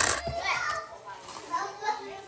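Faint, distant children's voices and play.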